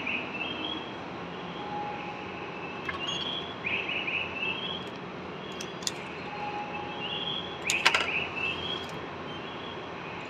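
Railway ticket vending machine at work: a cluster of sharp mechanical clicks about eight seconds in as it handles the IC card and issues the ticket. Behind it is a steady station hum with repeated short bird-like electronic chirps and two faint short beeps.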